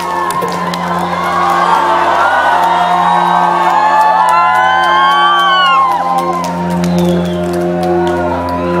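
A live band holding a low sustained chord as a song's intro, with the audience screaming and whooping over it. The screams are thickest a few seconds in, with scattered claps.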